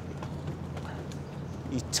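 Low, steady outdoor background noise with no distinct events; a man's voice starts right at the end.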